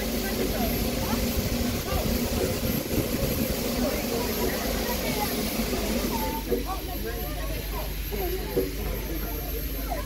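Steam hissing from a stationary LNER A4 Pacific steam locomotive, a steady hiss that eases off about six seconds in, over a low steady hum.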